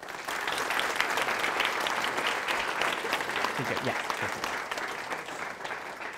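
Audience applauding, many hands clapping together, dying down near the end.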